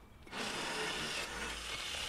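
Makita cordless drill spinning a wire brush wheel against a rear brake caliper carrier, scrubbing rust and brake dust off the pad mounting surfaces. It starts about a third of a second in and runs steadily.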